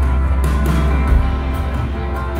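A live band playing with no singing: acoustic and electric guitars over drums, heard from the audience.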